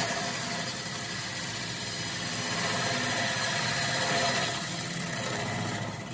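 Wood lathe running while a spindle roughing gouge cuts a spinning wood blank with its bevel rubbing, giving a steady scraping hiss of shavings peeling off. It swells slightly a few seconds in.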